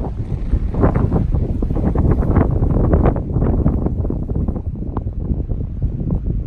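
Strong gusty wind, about 20 knots gusting to 30, buffeting the microphone: a loud, uneven low rumble that swells and eases with the gusts, a little lighter near the end.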